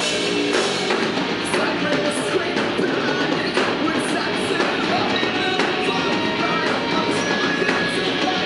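Heavy metal band playing live: distorted electric guitars, bass guitar and a drum kit with repeated cymbal hits, at a steady loud level.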